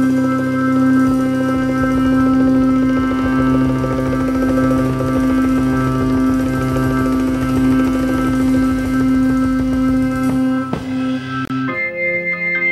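Psychedelic/progressive rock band playing an instrumental passage: a long held keyboard chord over a busy drum and bass rhythm. About ten and a half seconds in the drums stop, and just at the end a single high sustained tone enters.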